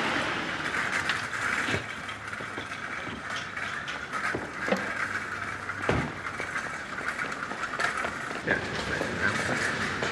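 Road traffic noise with a car's engine as the car draws up to the kerb, and a few sharp thumps, the loudest about six seconds in.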